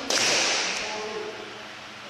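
A bamboo shinai strike in kendo: one sharp crack right at the start, followed by a shout that fades over about a second.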